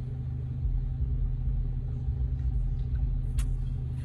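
A motor vehicle's engine idling: a steady low rumble, with one brief click about three and a half seconds in.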